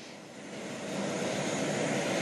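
Airliner engine noise from the airfield, a steady rushing that swells over the first second and then holds.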